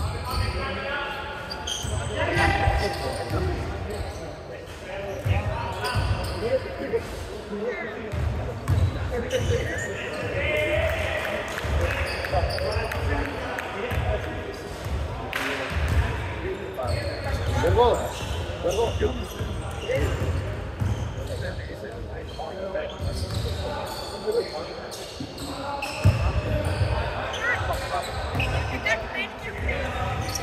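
A basketball being dribbled and bouncing on a hardwood gym floor, repeated thuds through the whole stretch, with players' voices and short sharp shoe and court noises echoing in a large hall.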